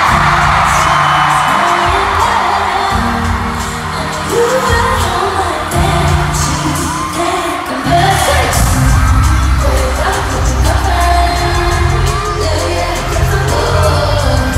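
Live pop concert music in an arena: a singer's voice over a heavy bass-driven backing track, with crowd noise beneath.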